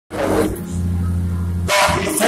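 Organ sound from a keyboard holding low sustained chords, shifting to a new chord about half a second in. A short loud burst of sound cuts across it near the end.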